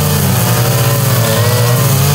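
Two petrol string trimmers (brush cutters) running at high speed together, cutting long grass. Their engine notes drift and cross slightly.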